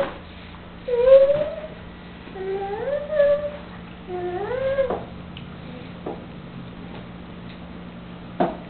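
A toddler's wordless vocalizing: three pitched calls over the first five seconds, each sliding up in pitch and then holding, followed by a couple of light clicks.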